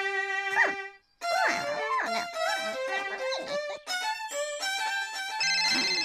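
Violin played solo in a cartoon soundtrack, a melody with sliding notes that breaks off briefly about a second in. Near the end a low steady buzzing tone comes in over it.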